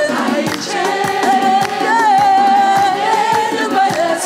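Group worship singing: a woman's lead voice holds one long note, wavering slightly in the middle, over other singers, with a steady beat underneath.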